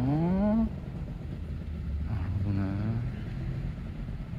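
A motorcycle engine idling at a distance: a low, steady rumble.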